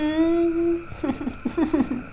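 A woman's voice humming one long steady note, close to the microphone, followed about a second in by a quick run of short wordless vocal sounds.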